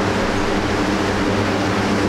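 Loud steady background noise with a low, even hum underneath and no distinct events.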